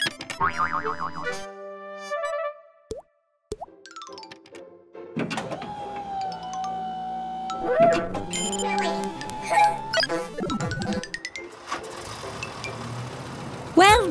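Cartoon sound effects, boings and plops, over children's background music. There is a brief gap about three seconds in, and the music runs on from about five seconds.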